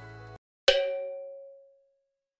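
A single bell-like ding sound effect, struck once with a clear ringing tone that fades out over about a second.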